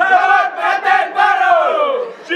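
Kompang troupe's men's voices calling out together in one loud, drawn-out shout that slides down in pitch near the end, closing their chanted song with the hand drums no longer beating.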